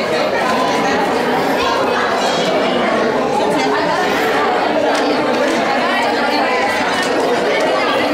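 Steady, overlapping chatter of many voices in a room, with no single voice standing out.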